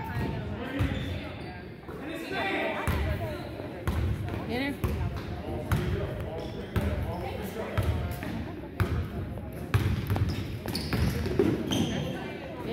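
Basketball being dribbled on a hardwood gym floor: a string of sharp, irregularly spaced bounces, with voices of players and spectators around it.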